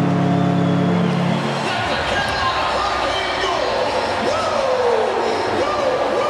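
Arena goal horn blaring one steady tone over a cheering crowd after a home goal; the horn cuts off about a second and a half in. The crowd keeps cheering and shouting after it stops.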